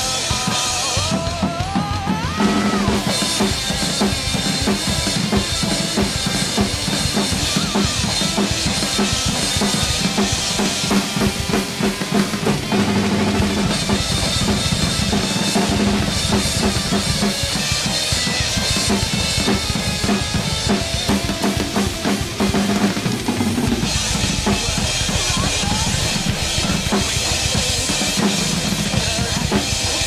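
Acoustic drum kit played hard in a rock groove: kick drum, snare and cymbals in a steady, busy pattern, with the cymbals washing louder over the last several seconds.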